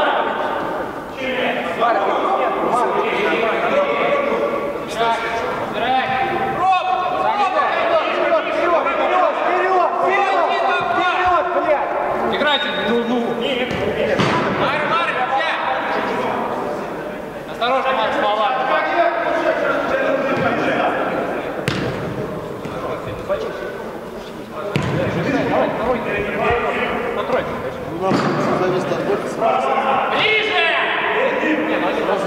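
Men's voices calling and talking across an indoor five-a-side football pitch, in a hall that echoes. A few sharp thuds of the football being kicked stand out, the loudest about two-thirds of the way through.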